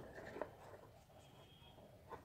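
Faint scratching of a felt-tip sketch pen drawing a line on a cardboard box, with a light tick about half a second in.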